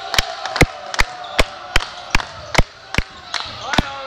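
A fan's drum in the stands beating a steady beat, about two and a half strokes a second, over crowd voices with one long held call.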